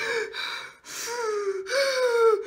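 A woman's dramatic wordless vocalising: two quick breathy gasps, then two drawn-out voiced sounds that each slide down in pitch.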